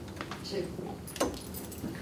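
Clear plastic drinking cup being handled and set down on a table close to a microphone: a few light clicks and crinkles, the sharpest about a second in.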